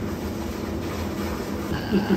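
Hot tub jets running: a steady pump hum under churning, bubbling water.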